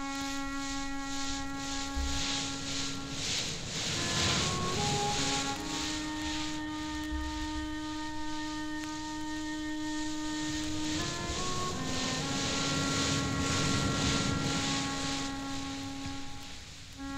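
Slow orchestral music from a 1960s LP: long sustained chords that change every few seconds. Beneath them runs a rushing sea-surf sound that swells and fades, loudest about four seconds in and again near the end.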